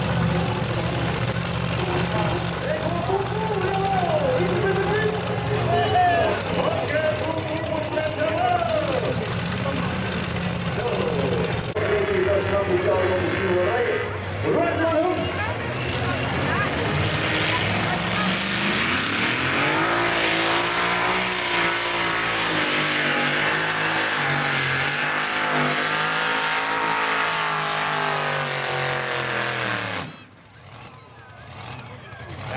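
Competition pulling tractor engines: a steady idle under a voice for the first half, then a little past halfway an engine revs up in a rising sweep and holds at a higher, wavering pitch.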